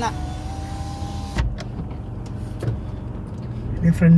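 Car's electric power window closing: a steady motor whine for about a second and a half that ends in a click as the glass seats, after which outside noise is shut out. A low engine hum runs underneath.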